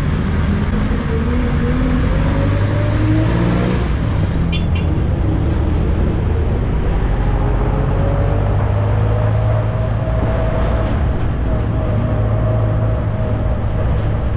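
Jeepney's diesel engine and road noise heard from inside the passenger cabin while under way, the engine note climbing twice as it accelerates and then holding steady.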